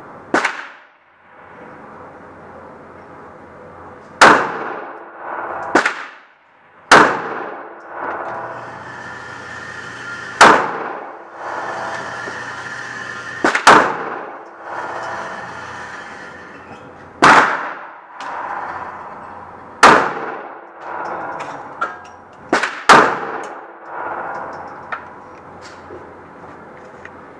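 Smith & Wesson M&P 9 9mm pistol fired at a slow, uneven pace, about eleven shots one to four seconds apart, two of them in quick pairs. Each shot is a sharp crack with an echoing tail off the range walls.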